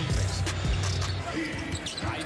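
Basketball being dribbled on an indoor hardwood court, a few low bounces heard over background music.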